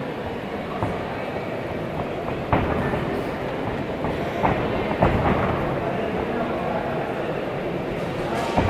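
Kicks and punches landing in a K-1 kickboxing bout: a few sharp smacks, the loudest about two and a half and five seconds in, over a steady murmur of the crowd and hall.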